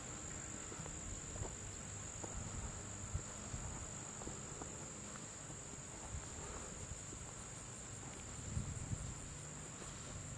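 Steady high-pitched insect chorus buzzing continuously, over a faint low rumble, with a few soft thumps.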